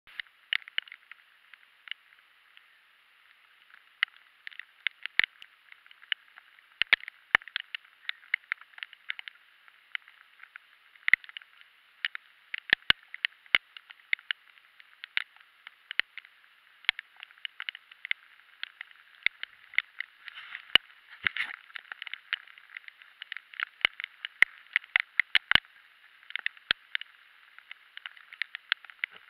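Heavy rain: a steady hiss with irregular, close, sharp taps of raindrops striking the camera's waterproof housing, several a second.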